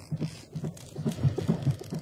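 Film soundtrack: a fast, low throbbing pulse, about six beats a second, over a faint hiss.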